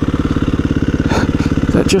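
KTM 350 EXC-F single-cylinder four-stroke dirt bike engine running steadily, heard from on the bike as an even, rapid beat of firing pulses.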